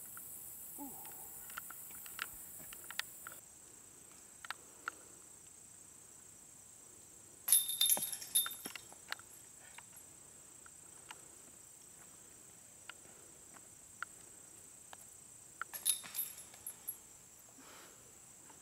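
Discs striking an old chain disc golf basket: a jangling metallic clatter of chains a little before halfway, then another cluster of clanks near the end. A steady high drone of insects runs underneath.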